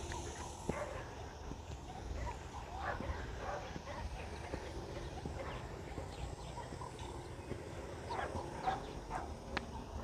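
Faint short animal calls over a steady low rumble: a few around three seconds in and a cluster near the end.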